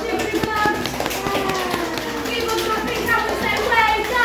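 Voices talking, with a few light taps in the first second and a half.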